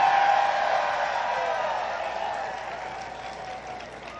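A large crowd of graduating midshipmen cheering and applauding. It is loudest at the start and fades away over a few seconds.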